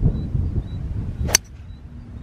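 Golf club striking a ball in a full swing: one sharp crack of impact a little over a second in, over low wind rumble on the microphone.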